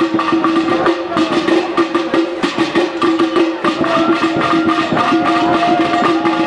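Procession music: quick, dense drumming under a steady held drone, with a melody line gliding above it that stands out more from about four seconds in.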